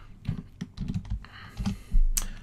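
Computer keyboard being typed on: a few irregularly spaced key presses.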